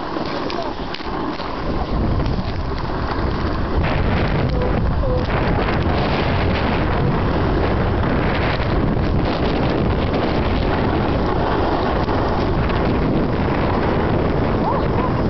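Wind rushing over the camera microphone while riding down a snow slope, mixed with a snowboard sliding on snow; the noise gets louder about two seconds in and then holds steady.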